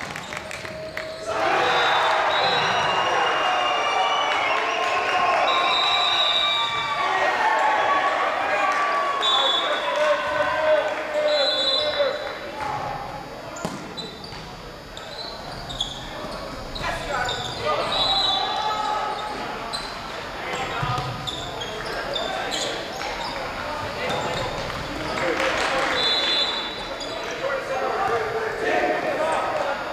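Volleyball play in a gymnasium, echoing in the large hall. Players shout and call out, shoes give short high squeaks on the hardwood court every few seconds, and the ball thuds as it is hit.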